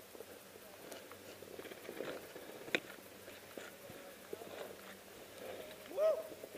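Skis sliding and scraping over snow, a faint hiss with scattered small crunches and clicks and one sharper click a little before the middle.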